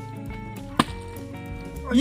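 Background music, with one sharp knock a little under a second in: a partly filled plastic water bottle, flipped, landing upright on the ground. A loud cry breaks out right at the end.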